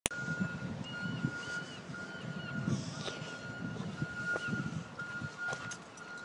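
Outdoor ambience: a thin steady high tone that keeps breaking off and coming back, a few short rising-and-falling chirps above it, and irregular low rumbling.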